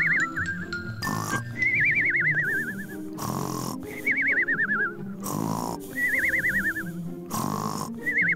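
Cartoon snoring sound effect: a rough snort about every two seconds, each followed by a wavering whistle that slides down in pitch, repeating four times over background music.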